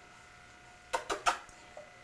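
Quiet at first, then about a second in three short soft smacks: kisses on a baby's cheek.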